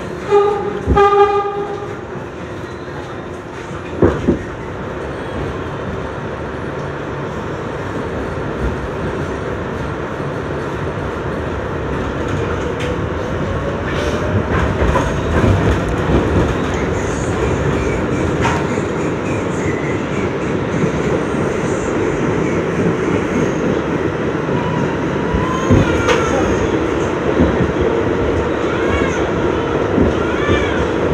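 Inside an R62A subway car running through a tunnel: a dense, steady rumble of wheels on track that grows slowly louder as the train gathers speed. The train's horn gives two short blasts in the first two seconds, a knock follows a couple of seconds later, and a faint rising motor whine comes in about midway.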